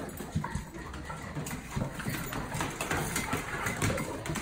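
Two golden retrievers greeting excitedly at a metal pet gate: scuffling and irregular low knocks as they jump up and paw at the gate.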